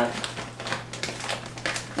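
Plastic sugar bag crinkling and rustling in a quick run of irregular crackles as it is handled and sugar is scooped from it, over a low steady hum.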